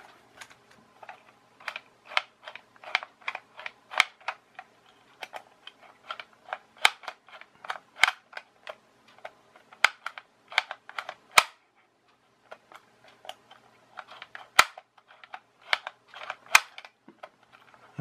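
Sharp plastic clicks and taps from the control sticks of a hobby radio-control transmitter being pushed and let spring back, irregular, a few a second, with a short pause about two-thirds of the way through.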